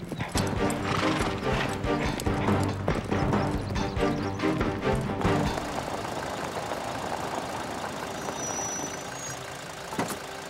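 Horse hoofbeats over a music score, the hooves stopping about five seconds in while the music continues.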